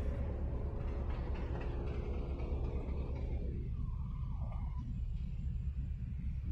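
Steady low rumble of city street traffic, with a vehicle's engine hum that fades out about halfway through.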